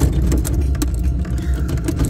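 Steady low rumble of a moving vehicle heard from inside its cabin, with frequent small rattles and clicks.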